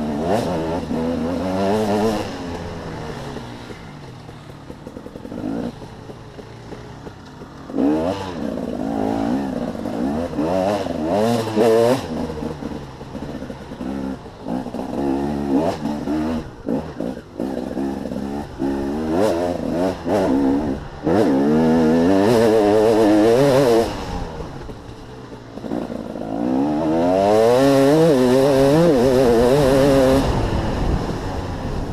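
Enduro dirt bike engine, heard on board, revving up through the gears and backing off again and again for the corners of a dirt trail. Its longest loud, steady full-throttle pulls come in the second half.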